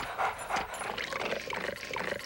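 Dog licking the inside of a glass bowl: an irregular run of wet licks and smacks, very close to the microphone, right in your ear.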